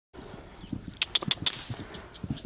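Hoofbeats of a horse cantering on sand toward a fence, with soft thuds and a quick run of sharp clicks about a second in.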